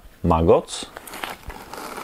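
Plastic bait bag crinkling and rustling in the hands as it is turned over, irregular and fairly quiet.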